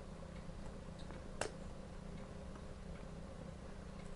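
Plier-style dog nail clippers cutting through a rough collie's toenail: one sharp click about a second and a half in, with a few faint ticks around it.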